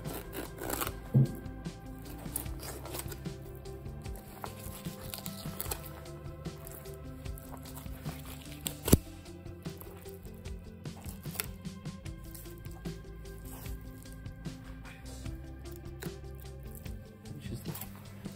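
Background music with held notes. Under it are faint clicks and scrapes of a flexible filleting knife running over the flatfish's bones, and one sharp knock about nine seconds in.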